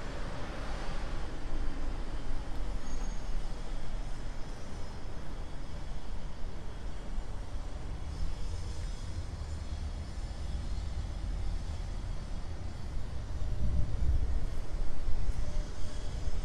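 Low, steady rumble of city street traffic, swelling a little near the end.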